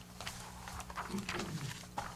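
Papers rustling at a meeting table, with a short low murmur from a person's voice near the middle, over a steady low hum.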